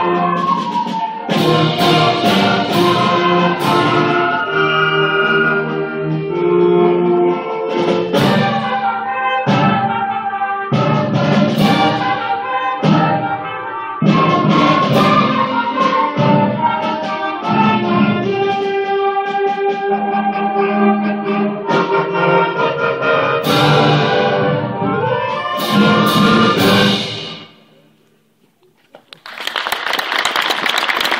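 Student concert band of woodwinds, brass and percussion playing a piece, with accented chords and drum strokes, closing with a final chord that fades out a couple of seconds before the end. After a brief quiet, audience applause starts right at the end.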